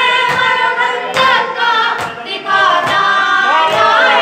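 A group of voices chanting a Shia mourning lament (noha) in unison. Rhythmic sharp strikes, about one a second, keep time under it: the hand-on-chest beating of matam.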